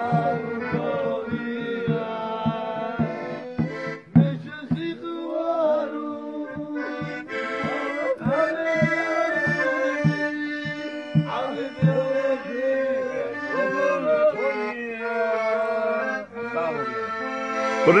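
Live Georgian folk dance music: an accordion playing sustained chords and a melody over a steady beat on a doli, a double-headed drum. A voice shouts "bravo" at the very end.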